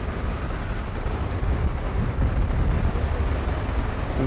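Low, steady outdoor rumble of city street background noise, with no distinct events.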